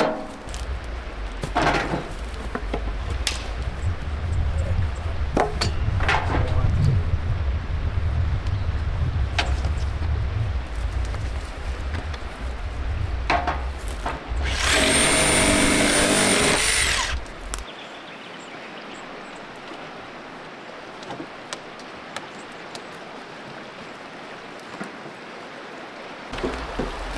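Dry wood knocking, cracking and scraping as sticks and branches are pulled from a pile of dead timber and gathered for firewood, with a loud rasping scrape of about two seconds a little past the middle. A low rumble runs underneath and stops about two-thirds of the way through.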